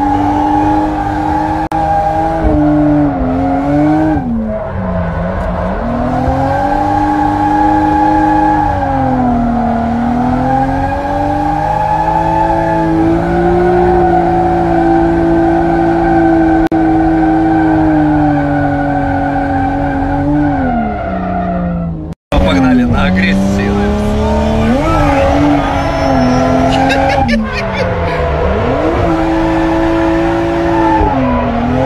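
Car engine heard from inside the cabin during a drift run, revving up and dropping back again and again and holding high revs for several seconds at a time, with tyres squealing. The sound cuts out for a split second about two-thirds of the way through.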